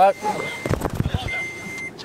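A steady high electronic beep sounds twice, each about half a second long. Between the two beeps comes a cluster of low knocks and bumps, like handling noise.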